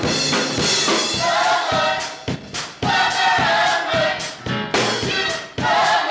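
Youth gospel choir singing with electric keyboard and drum kit. The voices come in strongly about a second in, over regular drum strokes and cymbal crashes.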